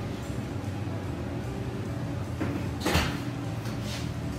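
Sheet pan being taken out of a wall oven and the oven door shut: light handling noise, then two knocks close together a little before the end, the second the louder, over a steady low hum.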